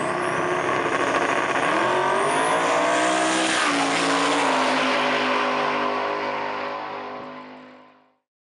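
Race car engine at high revs, its pitch climbing about a second and a half in, dropping sharply near the middle, then holding steady before fading out at the end.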